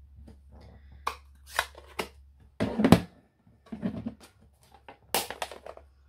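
Inking and stamping with a clear acrylic stamp block: a run of short taps and scuffs as the block is dabbed on an ink pad and pressed onto card, the loudest near the middle.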